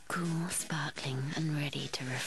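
A man's voice speaking: an advertising voiceover.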